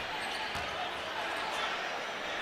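Steady background noise of a basketball arena during live play: a low crowd murmur and court sounds.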